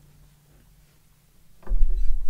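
An acoustic guitar's last strummed chord fading out. Then a loud low thump of handling about a second and a half in, as an acoustic guitar is lifted and set on the lap.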